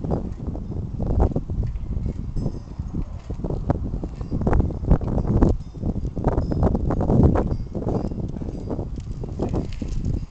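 A Mobo Shift recumbent trike rolling past on a concrete sidewalk: a run of irregular knocks and clatter over a low rumble, loudest as it passes close about five to seven seconds in.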